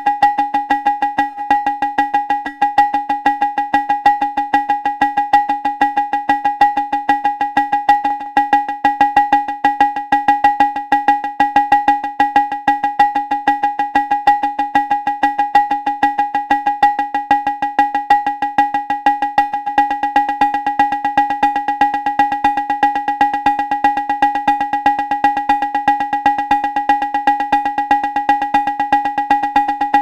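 Synthesized drum hits from a Thundrum modular drum voice, pitched and wood-block-like, fired in a rapid, even pulse by a Euclidean clock sequencer. The hits run through a Moon Modular 530 stereo digital delay, clocked in sync, whose close repeats merge into a steady pitched ring under the hits.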